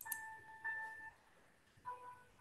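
Faint short electronic tones like a chime: a steady note sounds twice in the first second, and a lower two-part note starts near the end.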